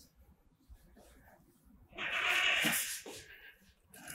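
Small motion-sensor trash can's motorised lid opening, a whir of about a second that starts about two seconds in.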